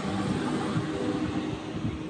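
Steady outdoor background noise of a crowded walkway, with a faint low steady hum and faint distant voices.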